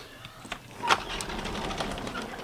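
Handling noise from the phone camera as it is pushed through a lace net curtain at a doorway: a few sharp clicks and knocks, the strongest about a second in, then a low, steady rattle.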